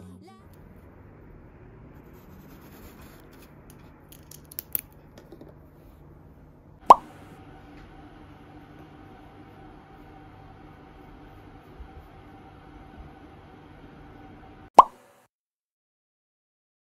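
Two short, sharp pops about eight seconds apart, each far louder than anything else, over faint room tone with a low steady hum; the sound cuts to silence just after the second pop.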